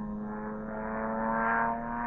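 Small propeller airplane flying overhead, a steady engine drone that grows louder to a peak about a second and a half in, then eases slightly.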